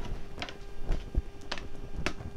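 Scattered light clicks and taps, about five or six in two seconds, over a faint steady hum.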